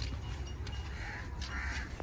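A crow cawing twice, faintly.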